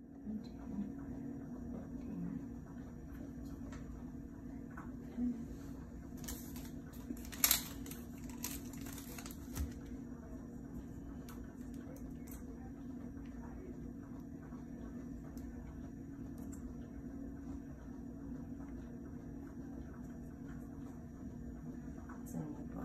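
Hands handling medical supplies over a steady low room hum: crinkling plastic packaging and small clicks, busiest and loudest about six to ten seconds in.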